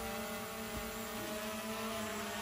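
Small quadcopter drone hovering, its propellers giving a steady buzzing hum that holds one pitch.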